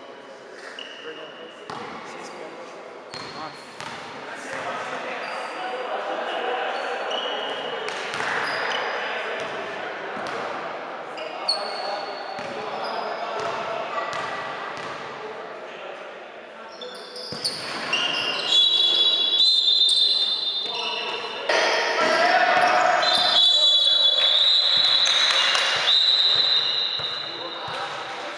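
Gym sounds during a basketball game: a basketball bouncing on the court and voices echoing in the hall. About two-thirds of the way in it gets louder, with high, held squealing tones over the voices.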